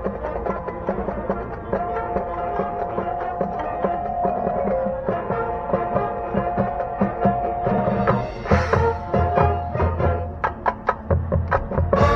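High school marching band playing its field show: winds holding sustained chords over a front ensemble of mallet percussion and drums. About two-thirds of the way through, heavy low drum hits come in, followed by a run of sharp accented strokes near the end.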